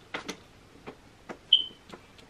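A pause with a few faint clicks, then a single short, high-pitched ping about one and a half seconds in that quickly dies away.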